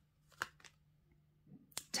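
Tarot cards being handled as one is drawn from the deck: a few short crisp card snaps, one about half a second in and another near the end.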